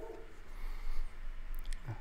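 Faint rustle and slide of a stack of freshly unwrapped trading cards being handled, with a light click near the end.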